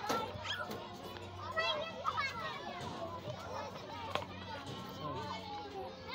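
Children playing at a playground slide: several high-pitched children's voices calling and chattering over one another.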